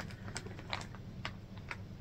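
Clear plastic zip-top bag of yarn scraps crinkling as it is handled, a few faint scattered crackles.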